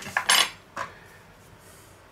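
Metal cutlery, a fork and a knife, clinking against the dish and board: about four short clinks within the first second, the third the loudest.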